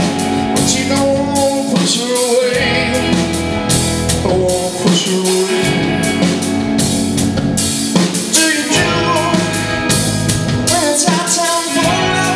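A metal band playing live: a male singer's vocal over electric guitars, bass guitar and a drum kit.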